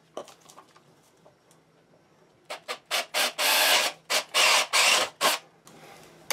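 A cordless drill drives a half-inch bit through the wall of a 3/4-inch PVC pipe. It starts about two and a half seconds in with a few short spurts, then runs in two longer bursts of about a second each before stopping.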